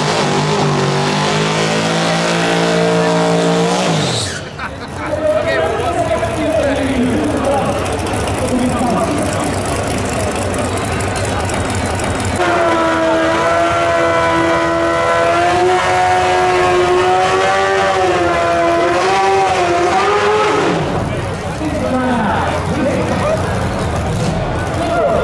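A race car's engine pulling hard for the first four seconds, its pitch climbing slightly before it cuts off, then voices. About halfway through, a small red pickup drag truck's engine is held at steady high revs for about eight seconds during a smoky burnout, then stops suddenly.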